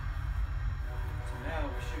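A man's voice speaking briefly near the end, over a steady low rumble.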